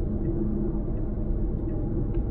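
Steady low road and tyre rumble inside the cabin of a Tesla Model Y at highway speed, with no engine sound from the electric drive.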